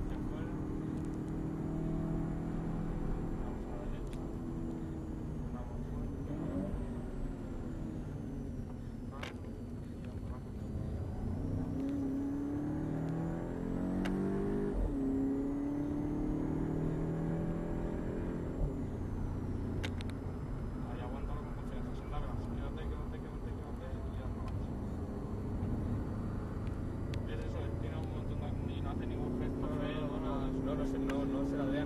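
Volkswagen Golf VII GTI's turbocharged four-cylinder engine, heard from inside the cabin on a circuit lap. Its revs rise and fall as the car brakes, turns and accelerates through the gears of the DSG gearbox, over steady tyre and road noise.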